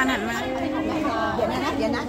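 Several people talking over one another: overlapping chatter.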